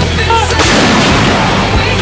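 Artillery gun firing, its blast mixed into rock music with a steady bass line.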